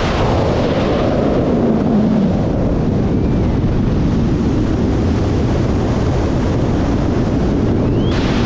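Loud, steady rush of freefall wind buffeting a skydiver's action-camera microphone, with slow drifts in its pitch.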